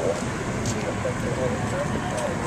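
Indistinct voices over a steady rush of outdoor noise, with no clear words.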